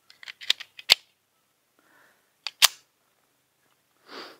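Handling of a Colt Competition 1911 9mm pistol: a quick run of small metal clicks, then two sharp clacks just under two seconds apart.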